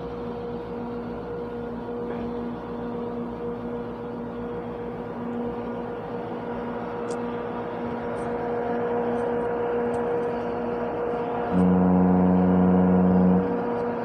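Steady hum of a container ship's engine and machinery heard on deck, holding a few constant tones. Near the end, a louder, deep, steady pitched tone sounds for about two seconds and then stops.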